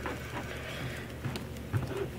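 Quiet room hum with a few faint clicks and rubs from fingers handling a small die-cast model.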